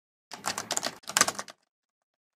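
A short clicking sound effect like fast typing, in two quick bursts about a second long in all.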